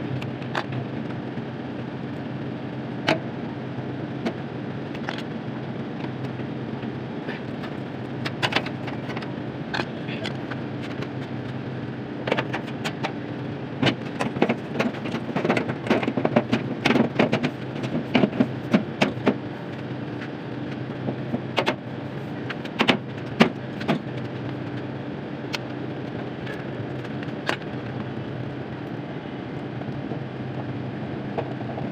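A steady low machine hum, with scattered clicks and small metallic knocks from tools and parts being handled at an air-conditioner outdoor unit, busiest in the middle.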